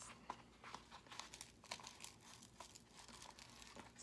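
Faint crackling and rustling of a Velcro hook-and-loop strip being pressed closed on an EVA foam bracer, with small clicks as the foam is handled.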